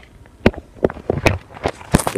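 Irregular sharp plastic clicks and knocks, about six in two seconds, from a Lego model being handled and turned.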